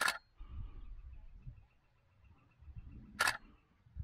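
Shutter of a single-lens reflex camera with a telephoto lens firing twice, about three seconds apart, each a short crisp burst, over a low rumble.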